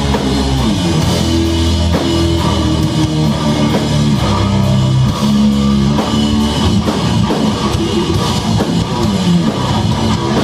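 Live rock band playing loud: sustained guitar and bass chords that change about once a second over a drum kit, heard from within the audience.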